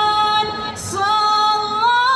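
Group of women singing in unison, holding long notes, with a short break about a second in before the next held note.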